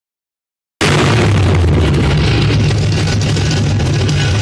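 Chevrolet 327 small-block V8 on an engine stand, running steadily and loudly through open long-tube headers at its first start. The sound starts abruptly about a second in.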